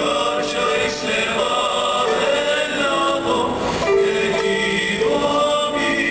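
Mariachi ensemble playing live with voices singing, a slow passage of long held notes that change pitch every second or so.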